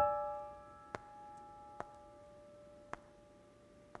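Background piano music: a chord struck at the start and left to fade away slowly, with a few faint clicks spread through the rest.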